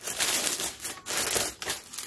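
Clear plastic packaging bag crinkling and rustling in irregular bursts as it is handled and opened.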